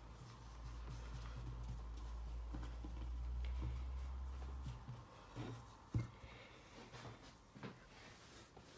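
A low rumble for the first four and a half seconds as hands smooth a sheet of puff pastry dough on a wooden board. Then a few soft knocks as a wooden rolling pin is handled against the board, the sharpest about six seconds in.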